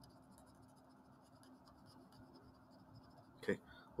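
Faint scratching of a pencil drawing on paper, under a low steady hum.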